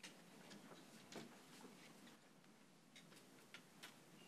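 Near silence: room tone with faint footsteps, a man's shoes stepping roughly twice a second across the floor.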